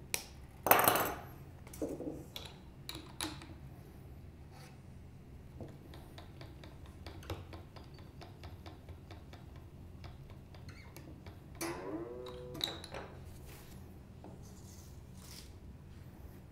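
Quiet handling of a steel guitar string as it goes onto a vintage-style Fender tuner post: a sharp metallic snap and rattle about a second in, then scattered light clicks and a run of small ticks as the tuner is turned. About twelve seconds in a brief rising tone sounds as the string comes up to tension.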